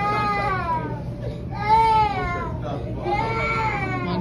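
A baby crying in about three long, wavering wails, one after another.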